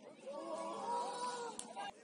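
Several voices shouting and calling at once across a football pitch, drawn-out overlapping cries, with a sharp knock near the end.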